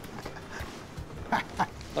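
A man laughing briefly near the end, over low background room noise.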